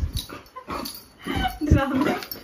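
A fluffy white pet dog vocalizing in short pitched calls while excited at play, with the strongest call in the second half.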